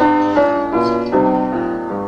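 Piano playing a short instrumental interlude in a Christmas carol, striking a new chord roughly every half second, each one fading slightly before the next.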